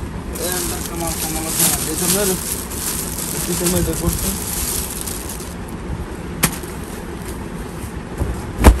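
Cloth and plastic packaging rustling and crinkling as garments are handled, over background voices, with one sharp click near the end.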